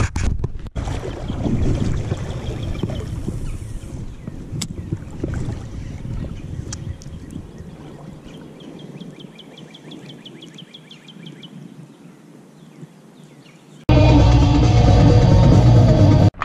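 Wind rumbling on the microphone beside a river, fading over several seconds, with a faint rapid clicking for a few seconds in the middle. Near the end it cuts abruptly to much louder music.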